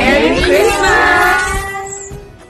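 A group of women cheering together in one loud shout of many voices at different pitches. It breaks out suddenly and trails off over about two seconds.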